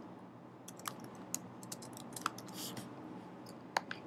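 Faint typing on a computer keyboard: a handful of scattered, unhurried keystrokes, with one sharper click near the end.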